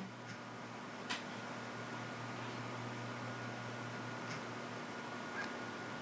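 Quiet room tone: a steady low hum and hiss, with one faint click about a second in and two fainter ticks later.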